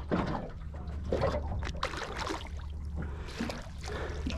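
A small hooked barramundi splashing at the surface beside the boat as it is played in on the line, a few irregular splashes over a steady low hum.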